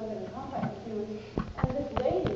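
A voice speaking in a room, followed by a few sharp knocks in the second half.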